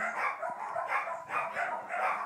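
Shetland sheepdog barking repeatedly, about three short barks a second.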